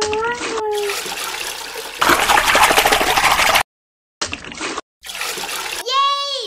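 Added water sound effect, edited in hard-cut pieces: water running, louder for a stretch from about two seconds in, then stopping dead, followed by two shorter bursts. A squeaky cartoon voice rises at the start, and a falling cartoon 'yay' comes near the end.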